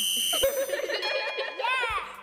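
End of an intro jingle's sound effects: a short, steady, high electronic beep, then a busy mix of chime-like tones, and a pitched sound that slides downward near the end.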